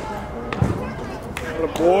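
Voices calling around a baseball field, with a single dull thud about half a second in, then a loud shouted "Oi" near the end.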